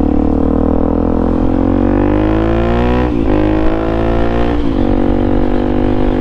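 Suzuki DRZ400SM's single-cylinder four-stroke engine accelerating under way. Its pitch rises steadily, then falls briefly twice as the rider upshifts, about three seconds in and again a second and a half later.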